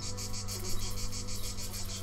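Crickets chirping in a rapid, even pulsing trill over a low steady drone.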